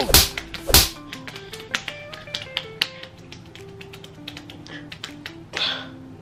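An open hand slapping a bare stomach, two loud sharp slaps within the first second, followed by lighter taps over soft background music.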